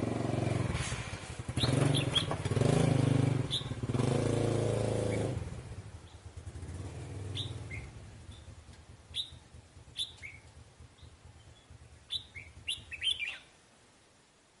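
Red-whiskered bulbul giving short, sharp chirping calls, scattered at first, then in a quick burst near the end. For the first five seconds a motor engine hums underneath, then fades away.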